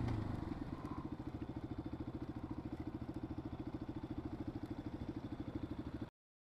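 Yamaha XT250's single-cylinder four-stroke engine coming off the throttle as the bike rolls to a stop, then idling with an even beat of about a dozen pulses a second.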